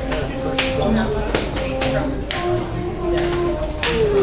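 An ensemble playing held notes that change pitch about every half second, with sharp taps and clicks among them.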